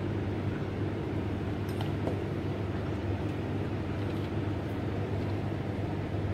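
Steady low machine hum in the room, even in level throughout, with a couple of faint light clicks about two seconds in.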